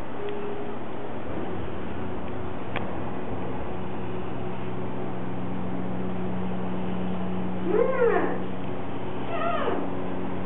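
Steady low hum of an elevator car in motion, with a single click about three seconds in. Near the end come two short cries that rise and fall in pitch.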